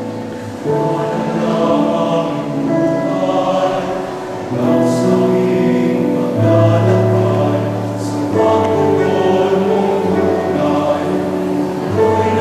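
All-male choir singing a hymn in harmony, holding long chords that change every second or two.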